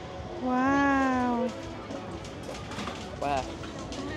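A gull's long, drawn-out mewing call, falling slightly in pitch at the end, followed about three seconds in by a short second call.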